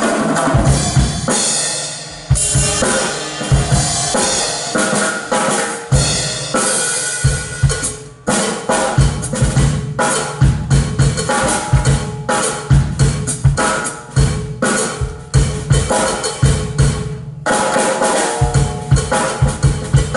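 Drum kit played as a solo: fast bass drum, snare and tom strokes under washing cymbals, with a short break about eight seconds in. The cymbals drop out near the end while the drums carry on.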